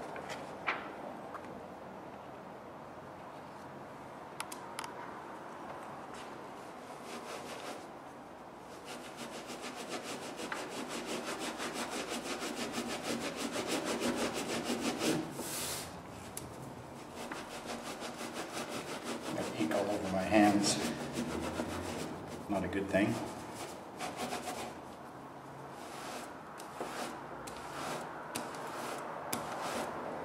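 A hand baren rubbed back and forth over paper laid on an inked relief printing plate, a dry rubbing sound as the print is burnished by hand. In the middle stretch the strokes come fast and even.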